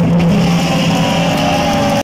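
Live heavy metal band holding a loud closing chord: distorted electric guitars and bass sustain steadily under a rolling drum and cymbal wash.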